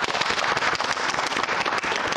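A group of people applauding: dense, steady clapping from a small studio crowd.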